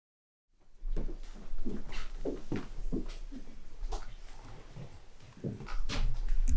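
The sound drops out entirely for about half a second, then returns with a low steady hum. Over it come soft footsteps on the wooden stage and a string of short, low vocal sounds, each rising and falling in pitch.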